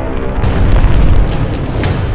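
Deep cinematic boom from a logo-intro sound effect, swelling to its loudest about a second in, with crackling on top, over the intro music.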